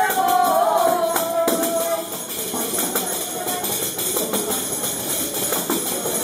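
Hand-held tambourines (panderetas) beaten in rhythm to accompany a sung folk tune. A held sung note ends about two seconds in, and the tambourines and voices carry on a little quieter after it.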